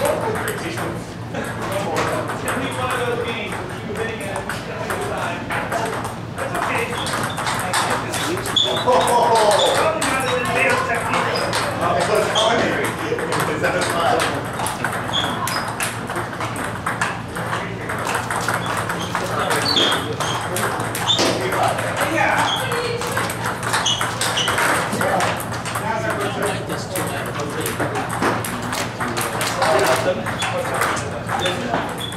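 Table tennis balls clicking off rackets and tables in quick, irregular strings of hits from rallies on several tables, with voices chattering across the hall and a steady low hum underneath.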